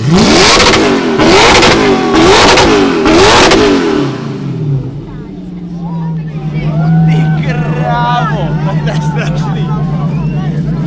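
Supercar engine revved hard four times in quick succession, each rev climbing and dropping, then settling into a steady idle, with crowd voices over it.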